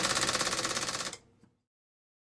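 IBM Selectric II Correcting electric typewriter typing with its top cover lifted: the golf-ball typeball mechanism makes a fast, even run of sharp strikes that stops about a second in.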